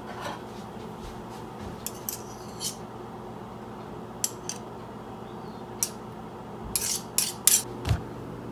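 Light clicks and clatters of kitchen utensils and containers being handled, a few scattered through and a quick cluster of louder ones near the end.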